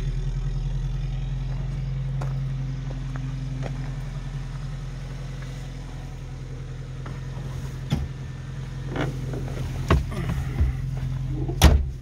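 Suzuki 4x4's engine running steadily at low revs with a low hum, the vehicle moving along a dirt track. A few sharp knocks and thumps come in the last few seconds, the loudest near the end.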